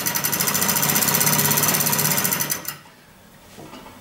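Hand-cranked demonstration alternator spun fast, its belt-driven rotor and brushes making a rapid, even mechanical clatter that stops abruptly near three seconds in.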